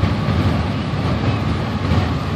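Steady low rumble of vehicle engines running.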